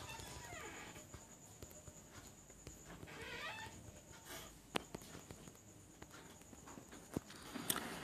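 Faint room background with a steady high hiss. A brief faint wavering sound comes a little over three seconds in, and there are two soft clicks, one about five seconds in and one about seven seconds in.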